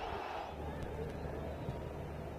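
Steady, low-level stadium ambience under a football match broadcast: a faint crowd murmur over a low hum, with no distinct shouts or ball strikes.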